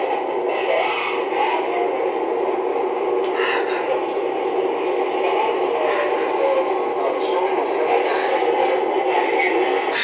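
Tinny, muffled voices from a played-back security-camera recording, continuous and without pauses.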